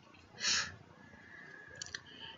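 A single short sniff, a quick breath in through the nose, about half a second in, then faint lip and mouth clicks near the end.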